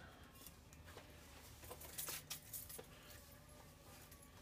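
Mostly quiet room tone with a few light clicks and clinks, clustered around the middle, from metal tools being handled on a workbench.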